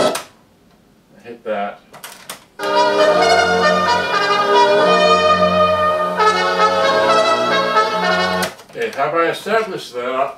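Music stops abruptly on a Toshiba RT-SF5 boombox, a few clicks of its controls follow, then brass-led music plays through its speakers for about six seconds. A voice follows near the end.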